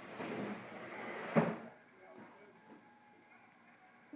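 A child's plastic picnic table being shoved across a wooden floor, scraping for over a second and ending in a sharp knock about a second and a half in.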